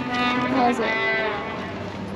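A person's long, steady-pitched vocal hum on tasting a beignet, followed by a shorter voiced sound that bends and fades out.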